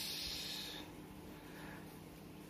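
A soft, breathy hiss, like a person exhaling close to the microphone, fading out within the first second, over a faint steady low hum.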